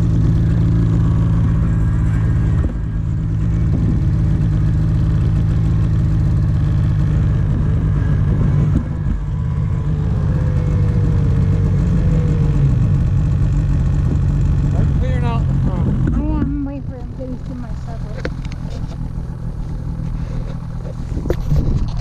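Snowmobile engine idling steadily, with a brief shout of voices near the end as the engine sound drops to a lower level.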